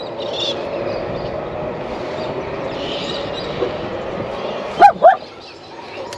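A dog in the vehicle barking twice in quick succession, two short, sharp barks near the end, over steady background noise.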